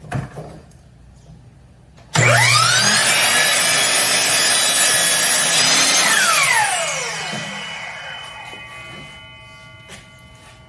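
Kobalt sliding compound miter saw started about two seconds in, its motor and blade spinning up with a fast rising whine, running loud for about four seconds while trimming a thin strip off the edge of a maple and walnut glue-up. Then the trigger is released and the blade winds down with a falling whine that slowly dies away.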